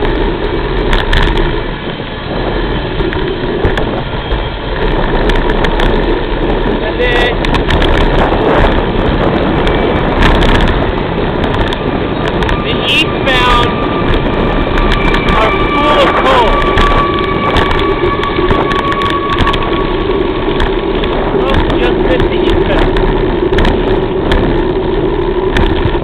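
A freight train of empty coal hopper cars rolling past, a steady rumble and clatter of wheels on rail, with a thin steady squeal for several seconds midway.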